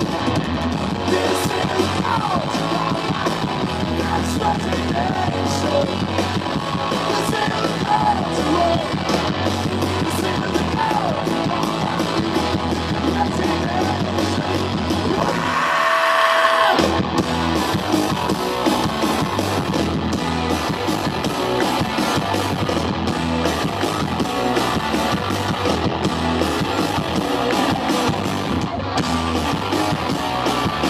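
A live rock band plays loud, with electric guitars, bass and drums, and a shouted voice. About halfway through, the bass drops out for about a second, then the full band comes back in.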